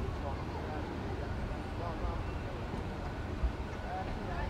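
Faint, indistinct voices of people talking at a distance over a steady low outdoor rumble.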